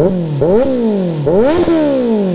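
Kawasaki Z900 inline-four through an aftermarket de-catted single exhaust, revved in quick throttle blips: two sharp rises in revs, each sinking back slowly, after the fall of an earlier one. The sound is smooth rather than ear-splittingly loud.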